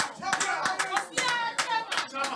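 Scattered hand clapping from a small audience, with voices heard over it.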